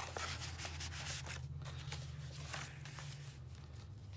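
Paper rustling and rubbing, an irregular run of dry scrapes as stiff paper journaling cards are slid into a paper pocket and a journal page is turned.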